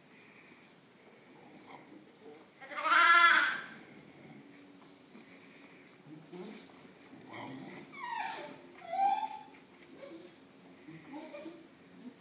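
Animal calls from a dog and lambs during bottle-feeding: one loud call about three seconds in, then several short calls falling in pitch near the end.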